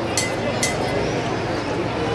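Crowd chatter, many voices overlapping with no single speaker standing out, broken by two brief high clinks in the first second.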